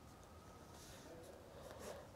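Faint scratching of a pen writing numbers on paper, in short soft strokes.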